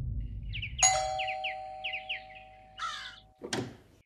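Doorbell chime ringing about a second in, its two tones lingering for about two seconds, over a run of quick chirps. Two harsh bird calls come near the end, and a low music drone fades out in the first second.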